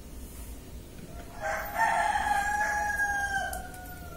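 A rooster crowing once: one long call of about two and a half seconds that starts about a second in and sags in pitch as it fades near the end.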